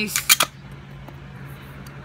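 A few sharp clicks in quick succession in the first half second as the magnetic battery cover of a VooPoo Drag vape mod is handled and snapped against its magnets, then a steady low hum.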